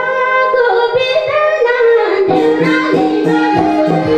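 Women singing a Nepali lok dohori folk song live, with long held, wavering notes over hand-drum accompaniment. A little after halfway the sound grows denser as more voices and steady drum strokes come in.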